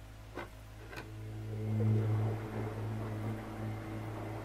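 A steady low hum, like a small motor running, that swells in about a second in, after a couple of light knocks.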